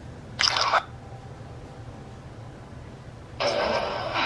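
Spirit box ghost-hunting app giving two short bursts of scanning radio static, a brief one about half a second in and a longer one near the end, over a low steady room hum.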